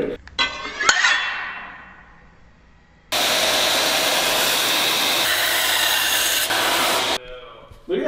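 Belt grinder grinding a steel knife blade: a steady rushing grind that starts about three seconds in and stops abruptly about four seconds later. Before it, a fainter ringing sound fades away.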